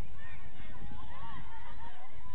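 Steady wind rumble on the microphone, with many short, overlapping calls in the distance that rise and fall in pitch.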